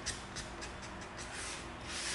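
Nitrile-gloved hands rubbing and handling EVA foam pieces on a cutting mat: faint scuffing with several small ticks, and a slightly longer scuff near the end.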